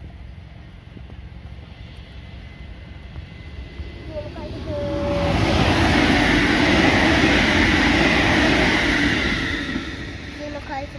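A JR electric commuter train passing close by at speed. Its running noise builds from about four seconds in, stays loudest for about four seconds, and dies away near the end.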